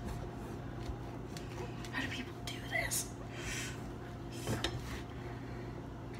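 Large kitchen knife chopping down into the hard rind of a whole spaghetti squash on a plastic cutting board: a handful of scattered knocks as the blade strikes. A few faint breathy vocal sounds come between the knocks.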